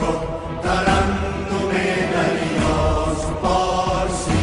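A Persian song playing: music with held, chant-like sung voices.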